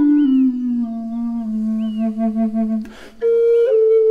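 Contrabass Native American-style flute (pimak) in A playing a slow melody: the notes step down and settle on a long low note, a breath is taken about three seconds in, and a higher note starts just after.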